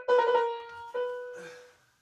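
Piano playing a short figure: a few quick notes, then a held note struck about a second in that fades away.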